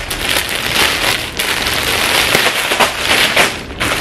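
A white plastic poly mailer bag being opened and handled: loud, continuous crinkling and rustling of plastic, dense with sharp crackles.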